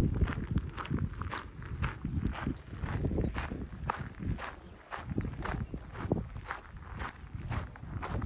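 Footsteps crunching on a gravel path at a steady walking pace, about two steps a second, with a low rumble underneath.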